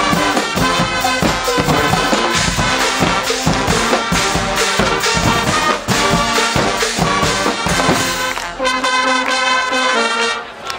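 Guggenmusik carnival brass band playing loudly: trumpets, trombones and sousaphones over a steady drum beat.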